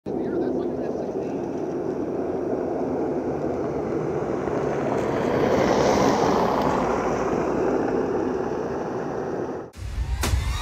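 Jet engines of a B-21 Raider stealth bomber flying past low just after takeoff: a steady rush that swells a little past the middle and cuts off suddenly near the end.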